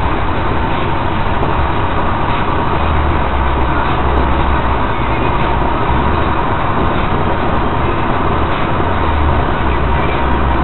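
Road and engine noise of a car cruising at highway speed, heard inside the cabin: a steady low rumble with an even hiss over it and a faint steady tone.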